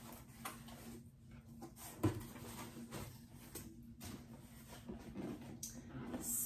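Cardboard shipping box being opened and handled by hand: scattered rustling and scraping of the flaps, with a single knock about two seconds in.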